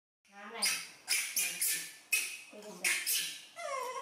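Young macaque crying: a run of about six sharp, harsh screeching squeals, then a falling, whimpering call near the end.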